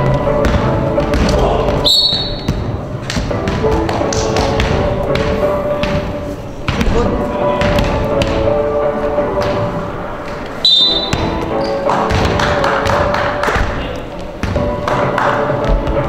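Game sounds of 3x3 basketball on a hardwood gym court: a basketball bouncing and thudding on the floor, with a few short high squeaks about two seconds in and again past the middle. Loud background music and voices run underneath.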